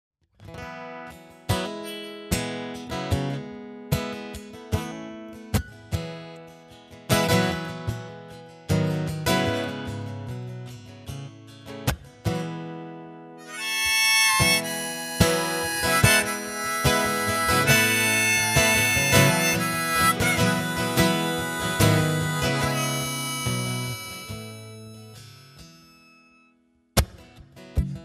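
Solo acoustic guitar strumming chords alone for about the first thirteen seconds, then a neck-rack harmonica joins with a melody over the guitar. The playing fades out a couple of seconds before the end, and a single new strum comes just before it ends.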